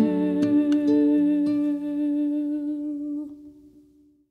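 The closing bars of a traditional Irish ballad recording: one long held note with a few plucked-string notes over it in the first second and a half, then the music fades out over the last two seconds, ending the song.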